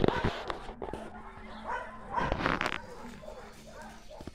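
Dogs barking in short bursts, the loudest a little past the middle.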